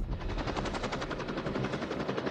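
Helicopter rotor chopping with a fast, even beat.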